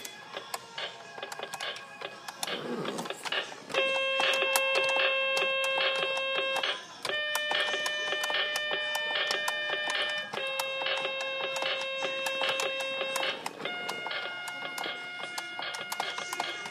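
Toy electronic keyboard sounding a run of four long held notes, each about three seconds with a short break between and a slightly different pitch each time, after a jumble of short notes in the first few seconds. Many quick clicks run through it.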